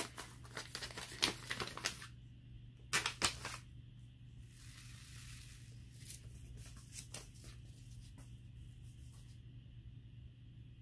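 A paper seed packet being opened and handled: dense crinkling and rustling of paper for about two seconds, a few sharper crackles about three seconds in, then softer rustling and scattered clicks as seeds are tipped out into a hand.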